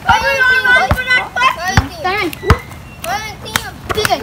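Children shouting and laughing during a basketball game, with a ball thudding on the hard court several times, the loudest thud about two and a half seconds in.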